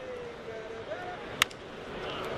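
A single sharp crack of a wooden baseball bat hitting a pitched ball, about one and a half seconds in, over the low murmur of a ballpark crowd.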